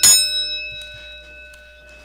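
Wrestling ring bell struck sharply, then ringing on with a clear, slowly fading tone, the signal for the match to begin.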